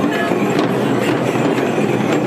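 Hand-held frame drums beaten by a dancing troupe, sounding within a dense crowd's noise and chatter. The sound is a steady din with occasional sharp strokes.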